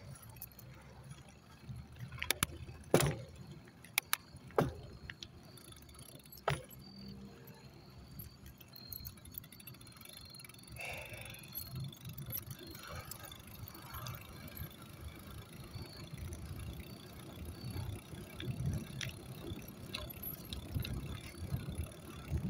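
Low rumbling movement noise with several sharp clinks in the first seven seconds, the loudest about three and four and a half seconds in.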